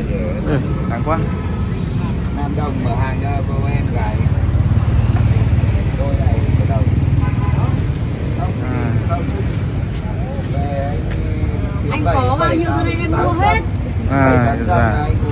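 People talking in the background, with voices coming and going and growing busier near the end, over a steady low rumble.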